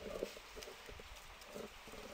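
Computer keyboard keys clicking faintly in a few irregular taps as a word is typed.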